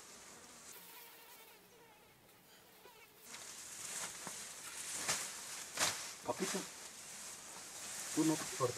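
Faint buzzing of a fly or similar insect flying around. From about three seconds in, a louder hissing rustle with a few soft clicks joins it.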